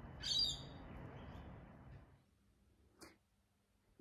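A single short, high-pitched bird call about a third of a second in, over faint outdoor background noise that cuts out about two seconds in. A brief faint click follows near the three-second mark.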